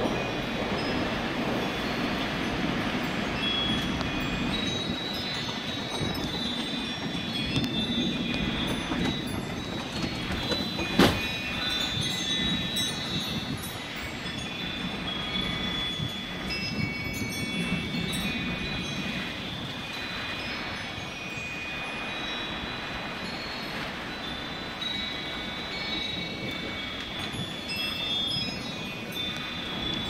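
Porch wind chimes ringing on and on in gusty storm wind, their tones layered over a steady rush of wind. A single sharp knock stands out about eleven seconds in.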